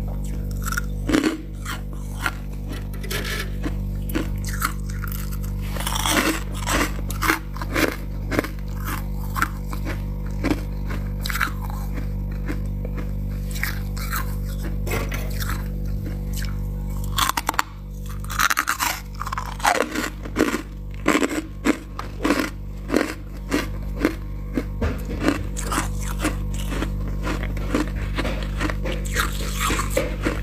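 Crisp, irregular crunching of soft, powdery freezer frost being broken and bitten, in dense clusters with a thinner stretch about midway. A steady low hum runs underneath.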